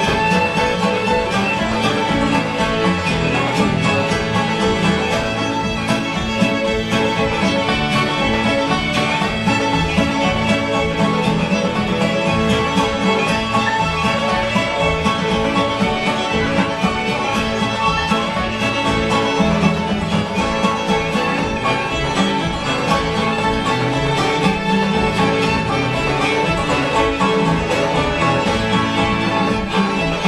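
Live folk string band playing together with a steady beat: several fiddles, acoustic guitar, banjo and piano.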